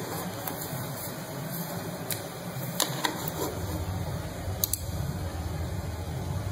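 Steady low room noise with a few faint, scattered clicks.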